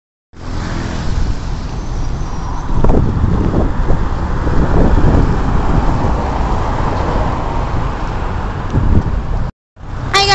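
City street traffic noise: a loud, steady rumble of road vehicles with a few brief swells. It cuts off suddenly near the end.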